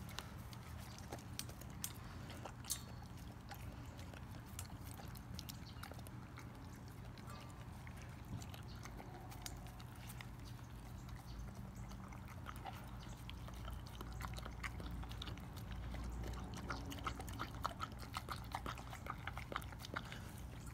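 A dog licking and lapping raw egg out of a stainless steel bowl: soft wet mouth sounds with scattered small clicks, coming thicker near the end.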